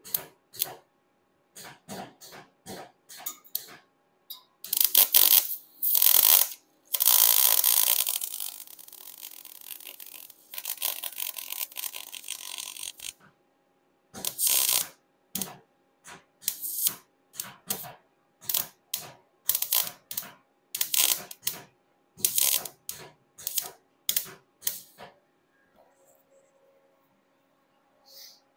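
MIG welder arc crackling on a steel car quarter panel as a large hole is filled over a copper backing plate: a string of short bursts, a longer run of several seconds in the middle, then more short bursts that stop near the end. The wire-feed speed is set a little low.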